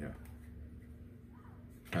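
Quiet room tone with a steady low hum and faint handling of a carded plastic blister pack, between a man's spoken words.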